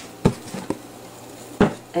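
A few short, light clicks and knocks: two clear ones, about a quarter second in and near the end, with a couple of fainter ticks between, over a faint steady hum.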